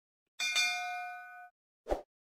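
Bell-style notification 'ding' sound effect of a subscribe animation: one bright ringing strike that dies away over about a second. A short soft thump follows near the end.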